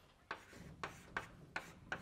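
Chalk writing on a blackboard: a run of short, sharp taps and scrapes as the symbols are drawn, about five strokes in two seconds.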